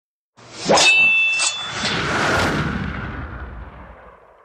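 Intro sound effect: a metallic clang with a bright ringing tone, two lighter hits, then a swelling whoosh that slowly dies away.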